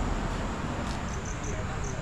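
Crickets chirping in short, high-pitched pulses repeated several times a second, starting about a second in, over a steady background hiss.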